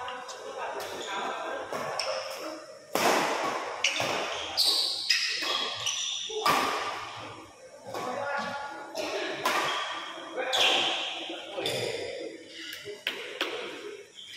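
Badminton rally in a large indoor hall: sharp racket strikes on the shuttlecock several times, with voices of players and spectators in between.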